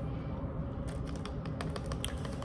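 Light clicks and scrapes, beginning about halfway through, from a plastic spoon working in a plastic cup of overnight oats as a spoonful is scooped up.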